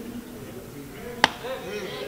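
A single sharp click a little over a second in, over faint room sound.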